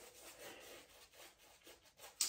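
Faint rubbing of a Declaration Grooming B3 shaving brush working lather over the face in uneven strokes.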